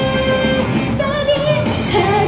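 A woman singing an anime song into a microphone over backing music through PA speakers. She holds one long note that ends about half a second in, then sings a short phrase with a wavering pitch.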